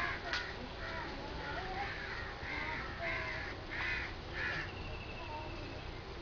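A crow cawing, a run of about eight calls at roughly two a second that stops a little after four and a half seconds in.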